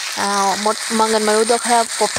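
Okra and potato pieces sizzling as they fry in oil, a steady hiss, with a voice talking over it almost throughout.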